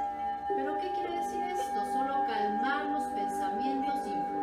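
Hand-held brass singing bowl sustaining one steady ringing tone, kept going by the striker, over a soft voice.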